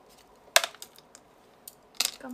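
A few short, sharp clicks or taps, the loudest about half a second in, followed by three fainter ones.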